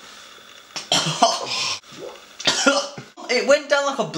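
A man coughing and clearing his throat in several rough bursts, then making strained voice sounds near the end, his mouth and throat burning from a bird's eye chilli he has just eaten.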